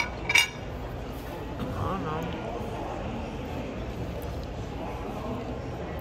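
Two short clinks of small hard objects, about half a second apart, right at the start. Then a steady background hum of a room with a faint distant voice.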